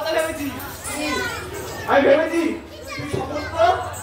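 A performer's voice, amplified through a public-address system, delivering gajon lines in Bengali with no musical accompaniment.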